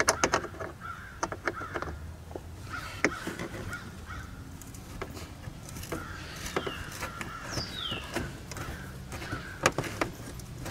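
Hands working behind a plastic wheel-well liner make scattered clicks, knocks and rustles, with the sharpest knocks near the start, about three seconds in and near the end. A crow caws repeatedly in the background.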